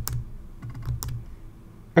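Computer keyboard typing: a few separate keystrokes, the sharpest about a second in.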